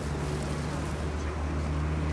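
Steady low hum of an idling vehicle engine, with crowd murmur over it.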